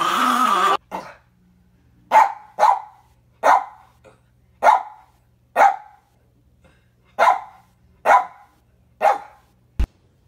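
A bulldog-type dog growling and barking at its reflection, breaking off a moment in. Then a small fluffy puppy barks at its reflection in a mirror: about nine short, sharp barks at uneven intervals of roughly a second. A single sharp click comes just before the end.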